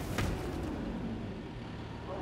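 A single thud about a quarter second in, followed by a low rumble that slowly fades.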